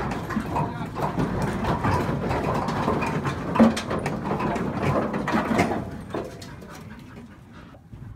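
Sheep and a working dog moving about in a metal livestock crate, with hooves and bodies knocking and clattering against the floor and rails. The clatter dies down after about six seconds.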